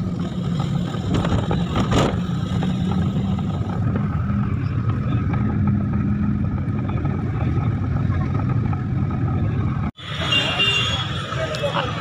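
Steady engine and road rumble heard inside a moving passenger van. It cuts off abruptly near the end, and street noise with voices takes over.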